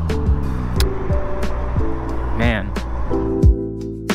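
Background lo-fi music with held notes and a steady beat, over rushing wind and road noise that drops away about three seconds in. A brief voice comes in about halfway through.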